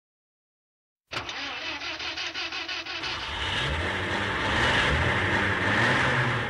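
A car engine starting about a second in: the starter cranks it with a rapid, even chugging for about two seconds, then it catches and runs, growing louder.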